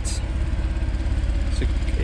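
Porsche 997 Gen 2 Carrera 4S's 3.8-litre direct-injection flat-six engine idling steadily, with a low, even exhaust pulse.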